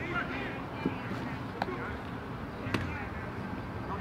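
Shouting voices of players and coaches on an outdoor football practice field, with a few sharp smacks of footballs slapping into hands, the loudest about a second and a half in and near three seconds.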